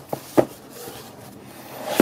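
Hands handling and opening a cardboard box: a sharp tap or knock of cardboard about half a second in and another near the end, with faint rubbing and rustling of cardboard between.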